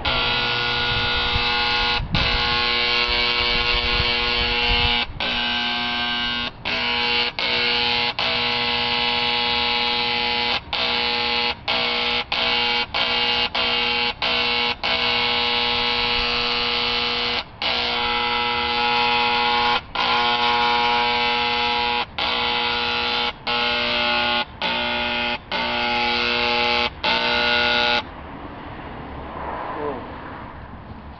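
Old Burgess electric paint sprayer running with a steady electric buzz, its trigger let go and pulled again many times, so the buzz breaks off briefly over and over before it stops near the end. It runs but does not spray, which the owner puts down to the paint needing thinner.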